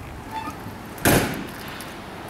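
A single short bump or knock about a second in, over a faint steady background.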